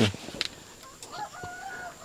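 A rooster crowing faintly: one drawn-out call that starts about a second in.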